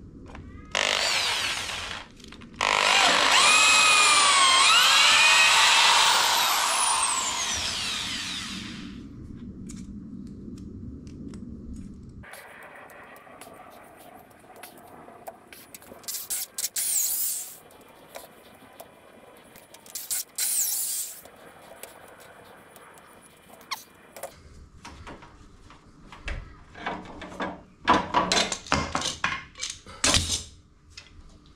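Electric drill driving a long auger bit into a thick timber slab. After a short burst, a long run has the motor's pitch rising and falling as it labours in the wood, then winds down. Two brief bursts follow later, and a run of clattering knocks comes near the end.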